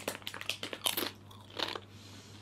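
Close crunching and chewing of Doritos Chilli Heatwave tortilla chips being bitten and eaten: a quick run of sharp crunches that thins out toward the end.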